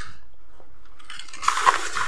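Chewing a hard, dry tarallo snack, with a few sharp crunches about one and a half seconds in.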